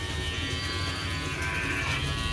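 Cordless electric hair clipper buzzing steadily as it shaves a dog's coat.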